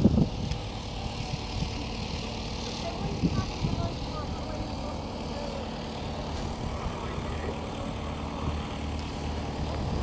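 Wind buffeting the microphone as a dense low rumble, with faint voices of people around and a low steady drone in the second half.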